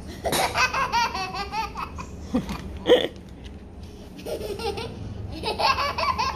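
A young child laughing in runs of quick, high-pitched giggles, with one short, sharp burst of laughter about halfway through that is the loudest sound, and the giggling starting up again near the end.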